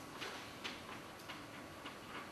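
Chalk tapping and scratching on a blackboard as figures are written, about four short irregular clicks.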